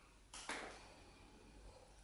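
Near silence: quiet room tone with a faint click and a short soft hiss about half a second in.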